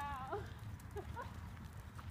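Horse trotting on arena sand: muffled hoofbeats in a low, steady rhythm, with a few short voiced sounds over them near the start and about a second in.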